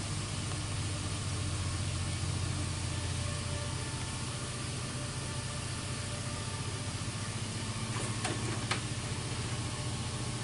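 Steady low mechanical hum with a faint hiss, with a few light clicks about eight seconds in.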